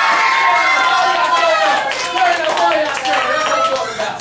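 A classroom of children cheering and shouting over one another, with claps mixed in.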